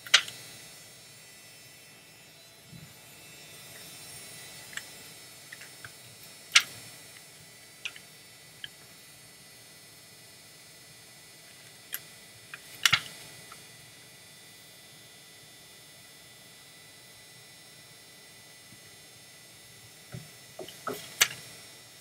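A passport booklet being handled and its pages turned: scattered sharp clicks and taps of paper and card, a few seconds apart, the strongest at the very start and about 13 seconds in, over a low steady hiss.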